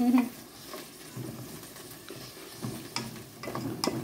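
Wooden spoon stirring sweetcorn, peas and mushrooms frying in an aluminium pot: a faint sizzle with a few short scrapes and knocks of the spoon against the pot.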